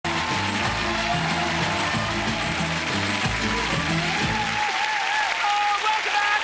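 Studio audience applauding over upbeat music; the music stops about four and a half seconds in and the applause carries on.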